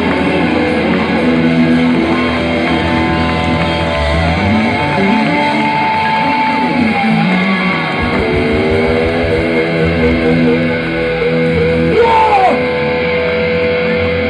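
A live heavy band at full volume, with distorted electric guitars, bass and drums, heard through a phone recording from within the crowd. A guitar holds long notes that waver and bend, with a sliding note about twelve seconds in.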